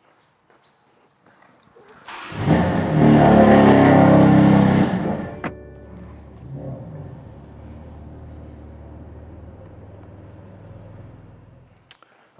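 BMW G80 M3's twin-turbo inline-six starting up, with a loud rising flare of revs for about three seconds, then settling to a steady lower idle that fades as the car pulls away. A short sharp click comes about five seconds in.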